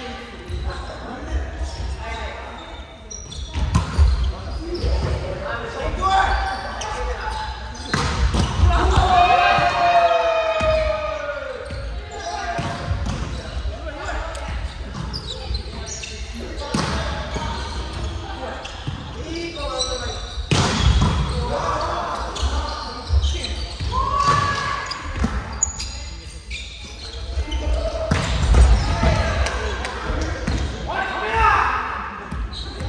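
A volleyball being struck by players' arms and hands and bouncing on a wooden gym floor, sharp thuds at irregular moments, echoing around a large hall. Players shout and call out between the hits, with one long drawn-out call about eight seconds in.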